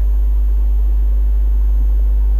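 Loud, steady low electrical hum, typical of mains hum picked up in the recording, with faint thin steady tones higher up.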